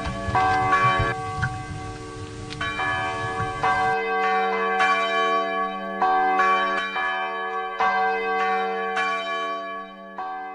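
Church bells ringing, a new strike roughly every second, each leaving a ringing stack of tones. Music plays under the bells for the first four seconds, then the bells ring on alone.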